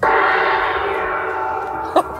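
A single ringing tone that is struck once, starts suddenly and fades slowly while it rings on, like an edited-in chime sound effect. A brief click comes just before the end.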